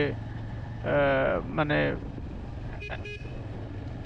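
Motorcycle engine running steadily at low road speed under a brief spoken word. About three seconds in, a short vehicle horn toot sounds from the surrounding traffic.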